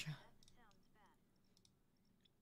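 Near silence: room tone with a few faint clicks, after a spoken word ends at the very start.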